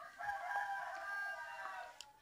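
A rooster crowing: one long, drawn-out call lasting nearly two seconds.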